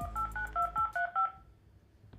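Mobile phone dialing a number: a quick run of about nine touch-tone keypad beeps, each a two-tone chord, stopping about a second and a half in.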